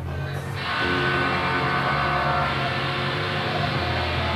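Amplified electric guitar and bass guitar holding sustained, ringing chords over a steady low drone. The sound swells louder about half a second in, then holds.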